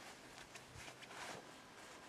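Near silence: faint outdoor background noise between lines of dialogue.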